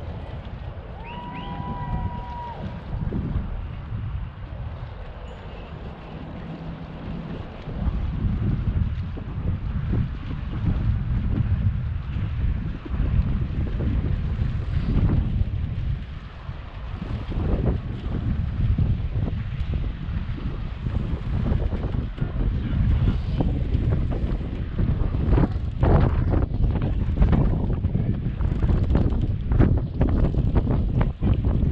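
Wind buffeting the microphone in uneven gusts, a low rumble that grows stronger about eight seconds in. A brief tone sounds about a second in, and a few short knocks come near the end.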